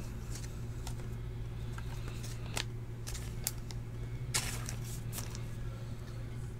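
Soft rustles and light clicks of a trading card being handled and slipped into a plastic sleeve, with a louder rustle about four seconds in, over a steady low hum.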